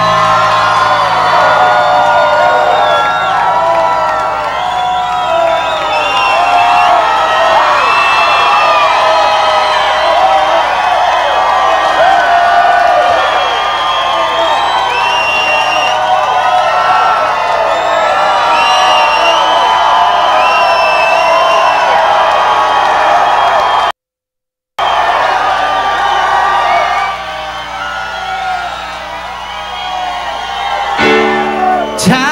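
A concert audience cheering, whooping and shouting together in a sustained ovation, with no band playing. The sound cuts out completely for under a second about three-quarters of the way through and is quieter near the end.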